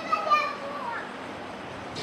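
Faint, high-pitched voices of children talking in the background, mostly in the first second, much quieter than the main speaker.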